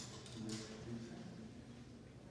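A faint, brief murmur of a man's voice, low and wordless.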